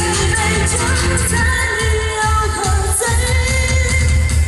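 A woman singing a Chinese pop song live through a microphone over full live-band accompaniment with a steady low beat, some notes held long.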